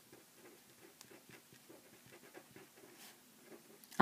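Very faint, irregular scratching strokes of a felt-tip marker writing on paper.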